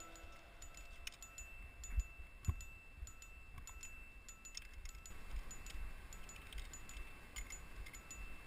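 Metal climbing gear on a climber's harness (carabiners and quickdraws) clinking and jingling faintly as he moves up a rock crack, with two soft knocks a couple of seconds in.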